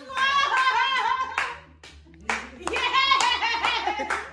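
Two long excited vocal calls, whooping with no clear words, with hand clapping.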